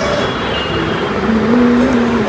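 A person's voice holding one steady note for about a second in the second half, over a steady rushing background noise.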